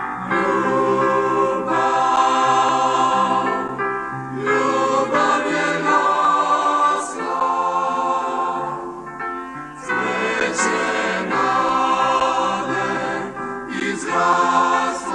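Mixed choir of women's and men's voices singing a sacred song in several parts, in sustained phrases broken by short breaths about every few seconds.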